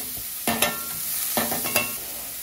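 Chopped onion sizzling in hot oil in an enameled cast-iron Dutch oven, with a utensil knocking against the pot four times in two pairs, each knock ringing briefly.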